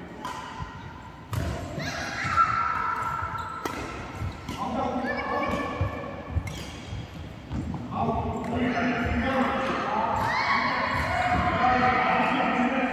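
Badminton rally: several sharp racket strikes on the shuttlecock and shoes squeaking on the court floor, with people's voices in the hall.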